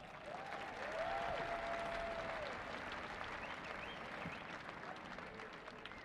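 Large crowd applauding, faint and even, swelling about a second in and slowly fading. A few faint held tones rise over the clapping in the first two seconds.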